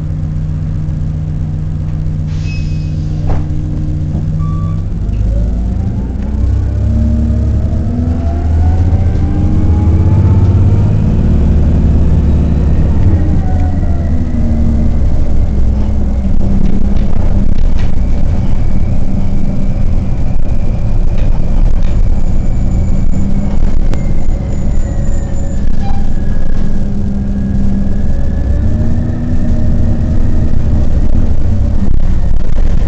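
Orion VII city bus heard from inside the cabin: running steadily for the first few seconds, then growing louder about five seconds in as it pulls away, with a drivetrain whine rising in pitch as it gathers speed and later falling again.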